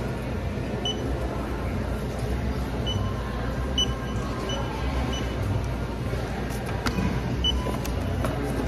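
Handheld barcode scanner at a self-checkout giving short, high beeps, six or seven scattered a second or so apart as items are scanned, over the steady low hum of a large store.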